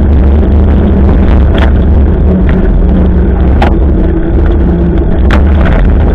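Heavy, steady wind rumble on the microphone of a camera riding on a moving bicycle, with road and tyre noise, broken by a few sharp clicks.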